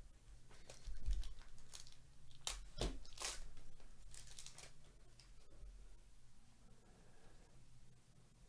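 Foil wrapper of a Topps Cosmic Chrome baseball card pack being torn open by hand: a string of sharp rips and crinkles over about four seconds, loudest near the middle, then quieter rustling as the cards come out.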